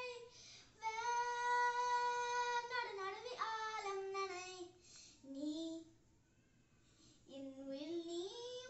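A young girl singing unaccompanied, holding one long steady note about a second in, then moving through shorter phrases that step down in pitch. She pauses for about a second and a half near the end, then starts singing again.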